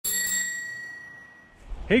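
A single bright, bell-like ding that rings out and fades away over about a second and a half. A man's voice starts just before the end.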